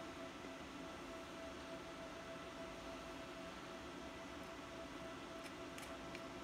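Quiet room with a faint steady electrical hum, broken only by a few faint small clicks near the end.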